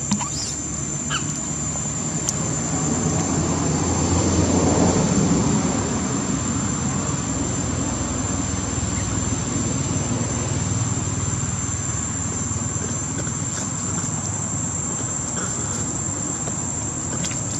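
Steady high-pitched insect drone over a low rumbling background noise that swells about four to five seconds in, with a few faint clicks.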